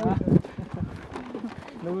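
Voices talking outdoors. A short burst of speech opens, then it goes quieter, with a low held tone and a brief word near the end.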